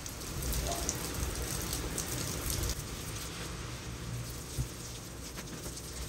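A toilet flushing in the background: a steady rush of water, loudest over the first three seconds, with some rustling of bedding.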